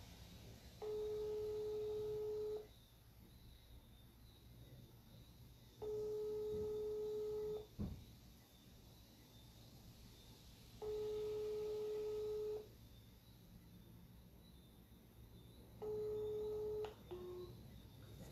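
Telephone ringback tone of an outgoing call: a steady beep just under two seconds long, repeating every five seconds, four times. The last beep is cut short and followed by a brief lower tone. A single sharp knock comes a little before the middle.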